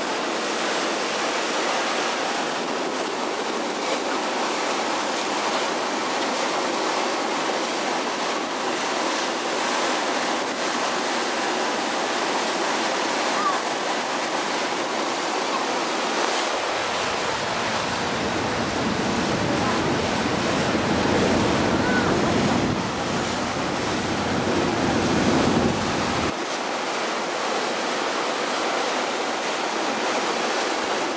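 Steady rush of wind and water washing past a moving harbour cruise boat. From just past the middle until a few seconds before the end, wind buffets the microphone in a low rumble that stops abruptly.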